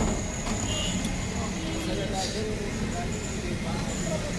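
Busy street ambience: a steady low rumble with indistinct voices talking in the background.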